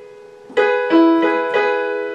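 Piano played slowly: a chord is struck about half a second in, a lower note joins a moment later, and the notes are held, ringing and fading.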